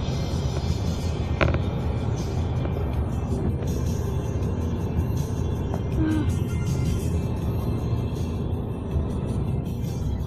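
Road noise inside a moving Honda car, a steady low rumble from tyres and engine, with music playing over it. A brief click about a second and a half in.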